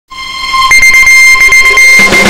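A loud, steady, high electronic tone, like a long beep, swelling in over the first half second and then held, with a few faint clicks over it: the opening tone of a TV news title sequence.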